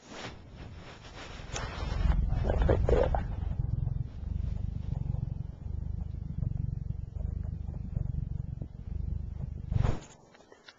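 Domestic cat purring, picked up with the camera's microphone pressed into its fur: a low rumble that swells and eases about once a second with its breathing. There is louder rubbing and handling noise about two to three seconds in.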